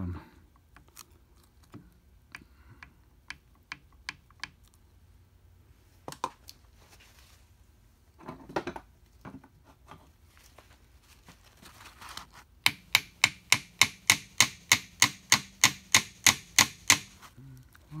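Metal parts of a Mercedes-Benz 190SL steering box clicking and knocking as the stiff sector shaft is worked loose: scattered single clicks at first, then a fast, even run of sharp metallic clicks, about four a second, for some four seconds near the end.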